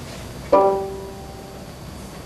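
A single ringing note that sounds suddenly about half a second in and fades away over about a second.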